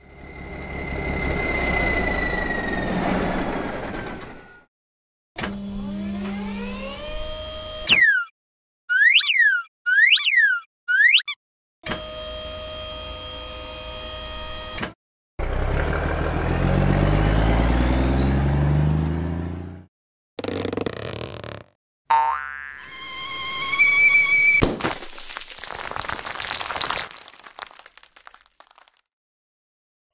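A string of cartoon sound effects: a falling whistle, rising glides, then three quick springy boings. Next comes a low rumble of a cartoon truck engine. Near the end there are chime-like tones and a scattering clatter.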